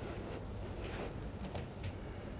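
Hands rubbing and pushing firmly across the back of a knit sweater in a back massage, a dry, hissing fabric friction in repeated strokes.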